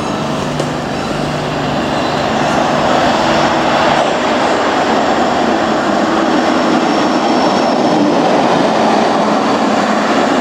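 A single locomotive running through a station, its rumble building as it draws near and staying loud as it passes the platform.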